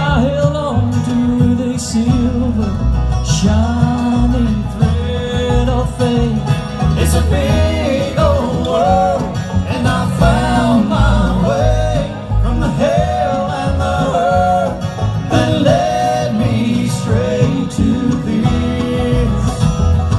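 Bluegrass band playing live: banjo, acoustic guitars and upright bass, with a melody line carried over the picking.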